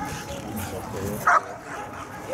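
German Shepherd dog barking at a protection helper in a bite sleeve: one short, loud bark about a second in, with softer yips around it.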